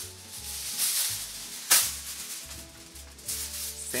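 Sheet of aluminium foil being handled and crinkled, with one sharp, loud crackle about a second and a half in, over quiet background music.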